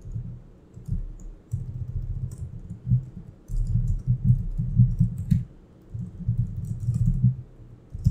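Computer keyboard typing in quick runs broken by short pauses, the keystrokes coming through mostly as low thuds with faint clicks.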